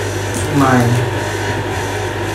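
A steady low hum that holds unchanged throughout, with a woman's voice speaking a word about half a second in.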